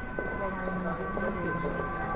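Pedestrian street ambience: faint voices of passers-by over several steady, unbroken tones.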